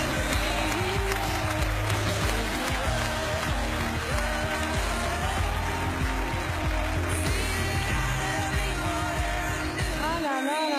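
Audience applause and cheering over loud music with a steady bass.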